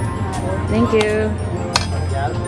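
Small stainless-steel sample cups clinking against each other and the steel counter, two sharp clinks about a second in and near the end, over background music and voices.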